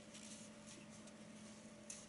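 Near silence: faint room tone with a steady low hum, a few soft rustles, and a brief small click near the end.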